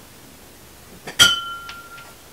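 A tall drinking glass clinks sharply against other glassware about a second in and rings with a clear tone for most of a second, followed by a lighter tap.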